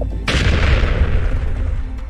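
A deep boom followed by a loud rushing noise that fades away over about a second and a half.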